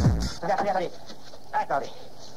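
Break in a fast hardcore tekno mix: the kick drum stops about half a second in, and a short sampled voice is heard twice over a thin background.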